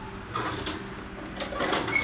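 Soft handling and movement noises in a small kitchen: faint rustling and a few light knocks as someone turns and steps about, over a low steady hum.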